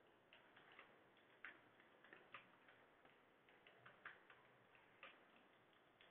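Computer keyboard typing: faint, irregular key clicks.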